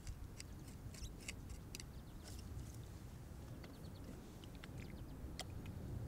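Faint, scattered crackles and small clicks of coarse, gravelly soil being scraped from a pit wall and worked in the hand for hand texturing, over a low steady rumble.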